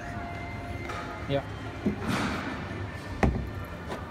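A single sharp knock on the plastic playhouse about three seconds in, after a short brushing rustle, with faint music in the background.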